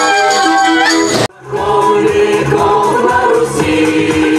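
Folk ensemble singing a folk song with instrumental backing. About a second in, the sound cuts off abruptly, and another group's singing and music start.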